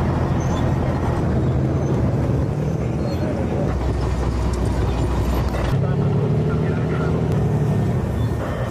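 Armoured tracked bulldozers driving, their heavy engines running as a steady low rumble that changes character about halfway through and again near three-quarters of the way.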